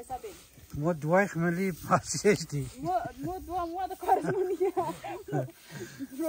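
A person talking, with a hiss of wheat grain around two seconds in as it is thrown up with a shovel to winnow it and falls back onto the heap.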